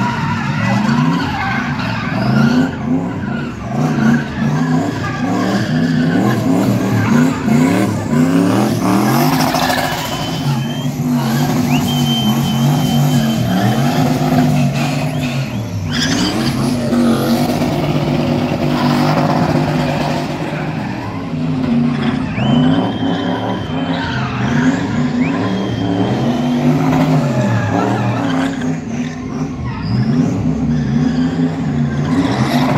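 A rear-wheel-drive car spinning in tight circles with its engine held at high revs, the revs swinging up and down over and over as the rear tyres spin and smoke. Short, high tyre squeals come and go a few times.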